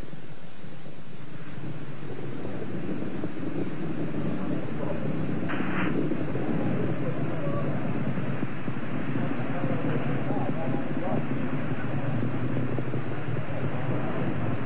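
Steady low rumbling roar on an old live TV news feed, with faint voices in the background and a brief hiss about five and a half seconds in.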